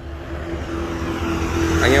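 A vehicle's engine and road noise while moving, a steady hum that grows louder toward the end.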